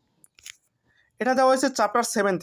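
A voice speaking Bengali after a pause of about a second, with a faint, very short click about half a second in.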